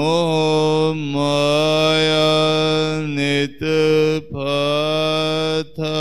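A man's voice chanting Gurbani verses to a slow melody, holding long steady notes. The chant breaks off briefly for breath a few times in the second half.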